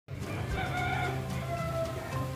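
A rooster crowing once: a long, drawn-out crow starting about half a second in, over a low steady hum.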